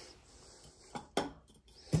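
Two light metallic clicks a fifth of a second apart, about a second in, from hand tools being handled; otherwise quiet.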